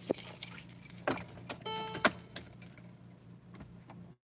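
Soft clicks and small rattles inside a car over a low steady hum, with a short steady tone about one and a half seconds in.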